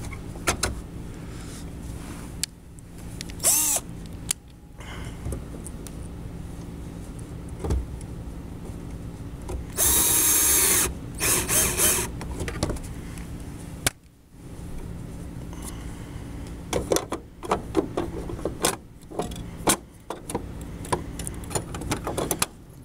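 Small electric screwdriver whirring in two short bursts about ten and twelve seconds in, driving in the screw that holds the TV's lamp module in place. Before and after the bursts come scattered clicks and knocks of plastic parts being handled and seated.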